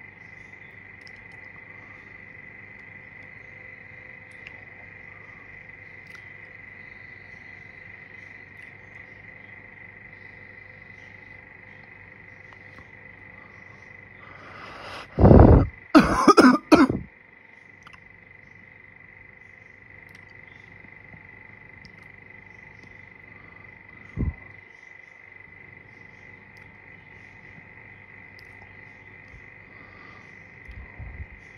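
A person coughs three times in quick succession about halfway through, over a steady high-pitched background hum. A single short thump comes later.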